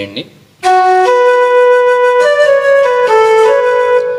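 Electronic keyboard playing a slow intro melody with a flute voice: a run of held notes that steps up and down in pitch, starting about half a second in.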